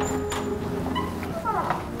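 Quiet room tone with a low steady hum, and a brief faint voice near the end.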